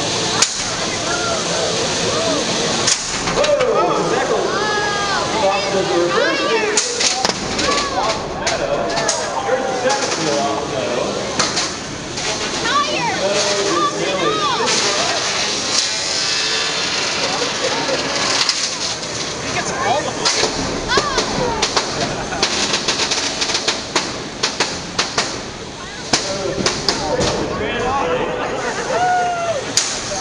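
Indistinct voices and chatter of people around the arena, with frequent sharp knocks and clatters from small combat robots hitting each other and the arena walls.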